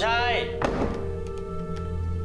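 Sustained, eerie background music, over which a door latch gives a single clack about two-thirds of a second in, with a few faint ticks later.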